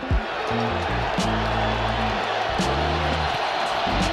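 Music with low held notes that change pitch every second or so.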